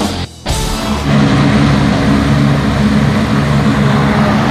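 Rock music with distorted electric guitar in the first half-second, then a loud, steady engine drone.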